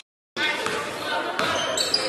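After a brief gap of silence at the start, a basketball is dribbled on a hardwood gym floor, with a few sharp bounces, and voices carry in the hall.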